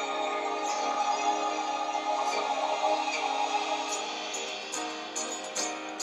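Broadway cast-album track playing, its instrumental opening: sustained chords with no singing, and light ticking percussion coming in near the end.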